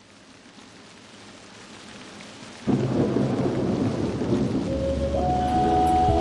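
A rushing noise swells up, then breaks suddenly into a much louder rushing rumble a little over two and a half seconds in. Soft music with held tones comes in underneath near the end.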